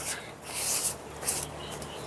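Rustling of a red quilted jacket's fabric as it is handled onto a wire coat hanger, in a couple of short swishes.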